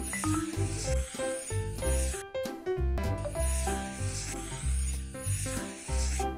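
Children's background music with a steady bass beat and short melodic notes, under a scratchy hissing sound effect of a number being traced in marker.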